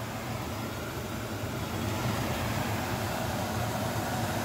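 Pot of water at a steady boil on a stove, heating a foil ration pouch: a continuous bubbling hiss.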